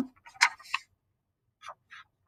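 Scissors cutting through a sheet of paper: a few short, crisp snips with pauses between them.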